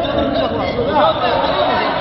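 Overlapping chatter of several men's voices talking over one another.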